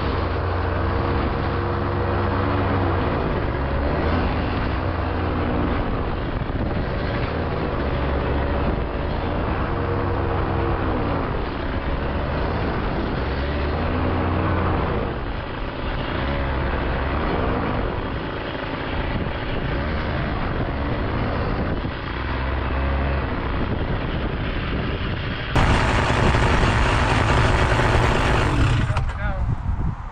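Microlight trike engine running, its pitch rising and falling every few seconds over a steady low rumble. About 25 seconds in it cuts to a louder, brighter recording of the same kind of engine and wind sound.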